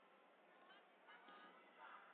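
Near silence: faint hall sound, with a few short, faint pitched sounds about a second in.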